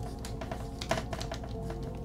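Dry-erase marker on a whiteboard: a run of short, sharp strokes and taps, a few a second, over quiet background music.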